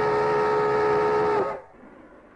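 Steam locomotive whistle blowing one long, steady blast of several tones together, sagging slightly in pitch as it cuts off about a second and a half in; a faint rumble of the train is left after it.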